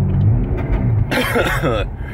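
Car's engine and exhaust droning low and steady inside the cabin while driving; the exhaust has a broken weld. A person's voice and a cough come over it in the second half.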